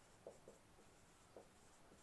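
Faint strokes of a marker writing on a whiteboard, a couple of soft short scratches against an otherwise near-silent room.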